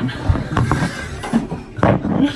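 Men laughing, with a louder burst of laughter near the end.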